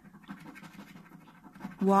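Scratching off the coating on the letter panel of a Crossword Plus scratchcard: a fast, gritty rasp that runs until a voice cuts in near the end.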